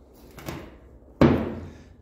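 A single hard knock a little over a second in, with a short ringing fade, after a fainter soft knock just before it.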